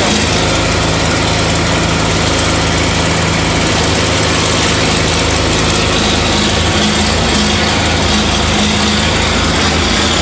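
Tractor and forage chopper running steadily while chopping hay: a constant, low engine drone with a dense rushing hiss over it.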